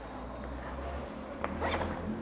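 A short rasping rustle, zipper-like, comes near the end, just after a single soft click, over a low hum. It is handling or movement noise as the teacher moves to the board.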